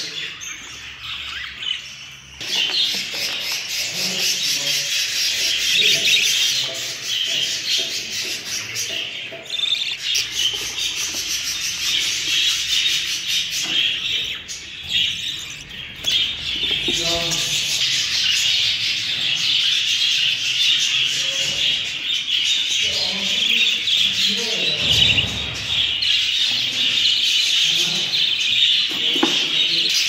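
Many budgerigars chirping and chattering without pause, a dense high twittering.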